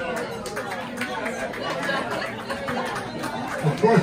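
Several people talking at once, a murmur of overlapping audience chatter in a small room. Near the end, one man's voice starts speaking clearly over it.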